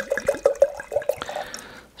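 Red wine glugging out of a glass bottle into a wine glass: a quick run of gulps, about seven a second, then a thinner steady trickle that fades out just before the end.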